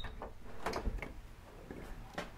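A few light, irregular knocks and bumps from someone walking with a handheld camera, over a low rumble.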